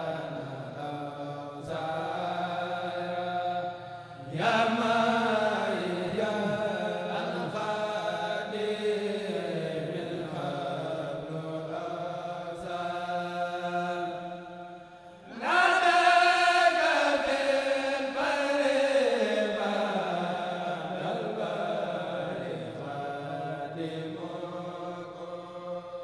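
A kurel of men chanting a Mouride xassida, a sung religious poem, through microphones. The voices carry long drawn-out melodic phrases that glide up and down, with a fresh, louder phrase starting about four seconds in and again about fifteen seconds in.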